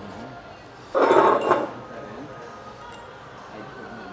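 A brief clatter of small metal tools and hardware clinking together about a second in, lasting under a second.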